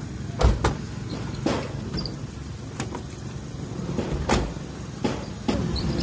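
A minivan's sliding side door being unlatched and slid open, with a series of sharp clicks and knocks, the loudest about half a second in and again about four seconds in, over a steady low rumble.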